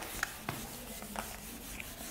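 A handheld whiteboard eraser rubbing across a whiteboard in short, repeated wiping strokes, erasing marker writing.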